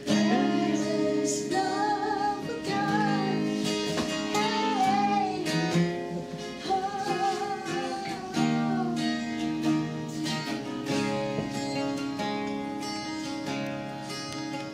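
Acoustic guitar strummed steadily, with a girl singing a worship song over it.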